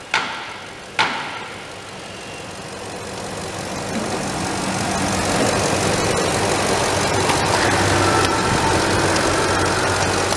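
Two sharp bangs, one at the start and one about a second in. Then the 6.2-litre V8 gas engine of a 2015 Ford F250 Super Duty idles, growing louder over the next few seconds and then holding steady.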